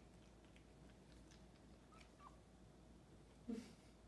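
Near silence, broken about three and a half seconds in by one short, low cat vocalization, with a faint small chirp a little before it.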